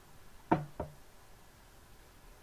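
Two knocks on a wooden work table about a third of a second apart, the first much louder, as hands shift paper pieces around on it.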